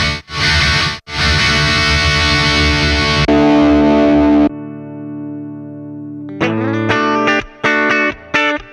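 Electric guitar played through a Hotone Ampero II amp modeler and effects processor. It starts with heavily distorted chords, cut off twice in the first second, and a loud held chord. At about four and a half seconds, as the preset is switched, it changes to a quieter, cleaner sustained chord, and from about six and a half seconds to short picked notes in a choppy rhythm.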